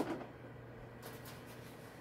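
A microwave oven running with a faint, steady low hum, after a single sharp click at the very start.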